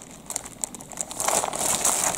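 Clear plastic packaging crinkling as a new rubber hot water bottle is handled inside it, growing louder in the second half.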